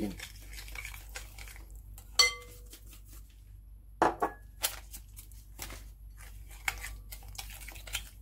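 Metal spoon stirring sugar into yogurt and oil in a glass bowl, scraping and clinking against the glass. There is a sharp ringing clink about two seconds in and two louder knocks about four seconds in.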